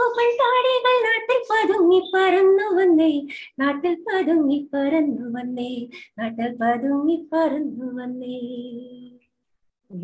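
A woman singing a song solo in long held notes, heard over a video-call connection, her voice growing softer and the song ending about nine seconds in.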